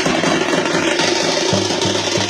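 Dhol and nagara drums beaten hard in a fast, dense beat that starts suddenly just before this point.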